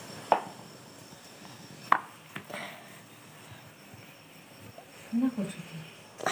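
A few sharp knocks in a quiet small room: one about a third of a second in, then two close together around two seconds in. A brief voice sounds near the end.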